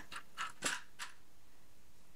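Soft rustling and scratching of fabric and a vinyl zipper panel being handled, a few brief scuffs in the first second.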